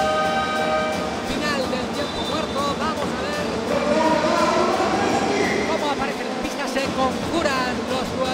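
Basketball arena horn sounding a steady chord of several tones that cuts off about a second in, signalling the end of a timeout. It gives way to the crowd's loud chatter and shouting, with music over the arena's sound system.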